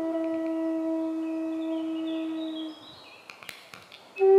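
Native American flute holding one long low note, which breaks off a little under three seconds in. A quiet pause with a few faint clicks follows.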